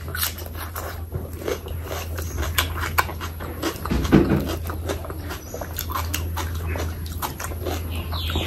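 Close-miked eating sounds of a mouthful of oily curry and rice: wet chewing, with a run of short mouth clicks and smacks and a louder wet cluster about four seconds in. A steady low electrical hum runs underneath.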